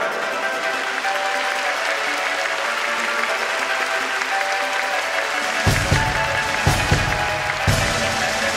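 Theatre audience applause under music with held notes. Near the end a drum beat with a heavy kick drum comes in.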